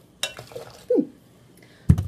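Hot water poured from a small stainless steel measuring cup into a glass tea press, with a brief falling tone about a second in and a sharp knock just before the end.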